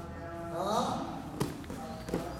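A man's short rising call, then a single sharp slap of a wrestler hitting the mat about one and a half seconds in, with a few softer knocks of scuffling on the mat after it.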